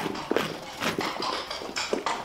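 Horse's hooves clip-clopping on cobblestones at a walk, sharp knocks about twice a second.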